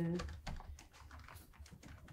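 Faint, irregular clicking of typing on a laptop keyboard, after a voice trails off at the very start.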